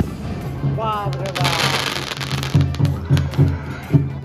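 Aerial firework bursting, heard as a burst of hissing noise lasting about a second, beginning about a second in. Music with a steady bass beat plays throughout.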